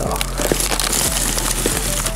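Background music, over the crunching and crinkling of dry pine needles and rotten wood as a dead log is rolled over by hand.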